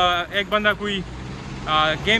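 A man talking, with a short pause about a second in; under it a steady low hum of road traffic.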